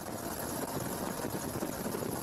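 Helicopter rotor and engine running steadily, with a thin high whine over the rotor noise.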